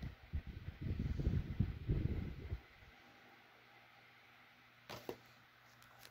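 Low rumbling handling noise as a plastic DVD case is tilted and moved close to the microphone, lasting about two and a half seconds. Then near quiet, broken by two light clicks close together about five seconds in as the case is handled.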